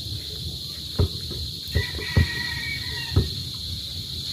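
Steady high chirring of insects, with about four separate dull thumps of a basketball hitting the hard ground.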